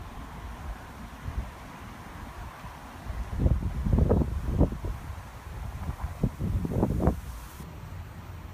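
Wind buffeting the microphone over a low steady rumble, with a run of short, irregular gusts in the middle.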